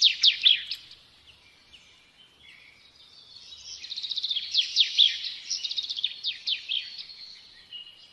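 Bird song: rapid trills of short falling chirps, one bout at the start that dies away by about a second in, then a longer bout that builds from about three seconds and fades near the end.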